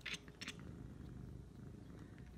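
Domestic cat making its strange, dinosaur-like noise at birds: two short breathy sounds in the first half-second, then a faint, low, steady sound.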